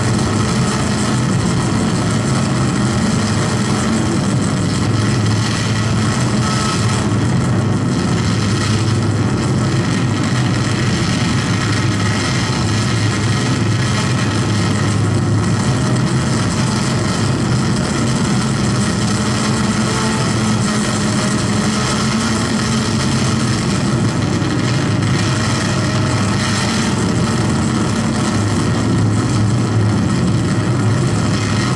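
A loud, steady mechanical hum with a low drone, unchanging throughout, like an engine or motor running.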